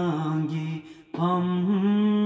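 A man's voice chanting in long, held tones, breaking off briefly about a second in and then carrying on.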